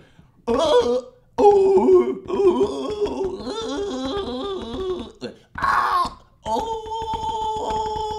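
A man's voice groaning and wailing without words, the pitch wavering, then a breathy outburst and one long held cry.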